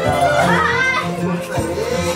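A baby crying and fussing in short wavering wails, over background music and adult voices.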